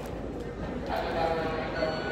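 Indistinct background voices with no clear words, the murmur of people talking nearby.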